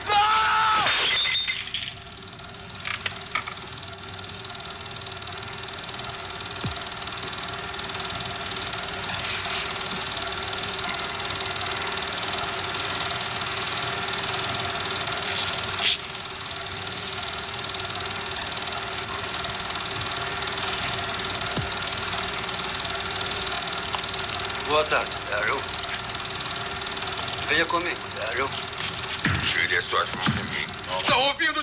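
A steady mechanical drone with a few fixed hum tones, growing slowly louder. A voice cries out at the start, and short vocal sounds come again near the end.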